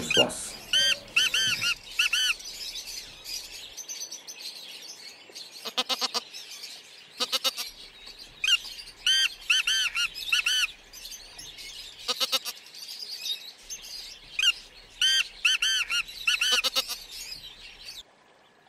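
Bird calls: three runs of about four short, arched chirping notes, with a few single notes between them, and a few short sharp sounds.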